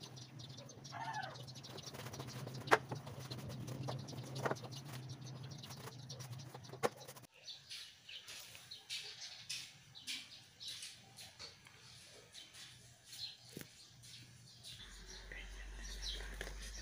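Shoes being handled and set down on wooden shelves: scattered knocks and taps over a steady low hum. After an abrupt cut about seven seconds in, the hum stops and short high chirps go on.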